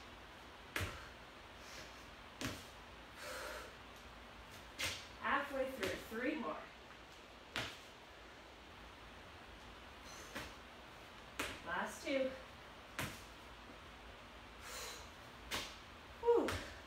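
Thumps of feet and hands landing on a hard wood floor during burpees, a sharp knock every few seconds. Short bursts of a person's voice come twice, around five seconds in and again near twelve seconds.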